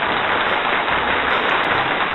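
Steady applause: a dense, even patter of many hands clapping, as a reward sound effect.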